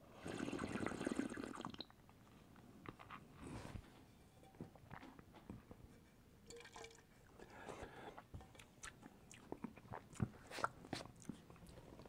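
A taster slurping a sip of red wine, drawing air through it in a noisy rush about a second and a half long at the start, with a shorter slurp a couple of seconds later. Then quiet mouth sounds of the wine being chewed and swished, with many small clicks and smacks.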